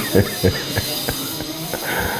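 Aerosol hairspray can spraying in a steady hiss.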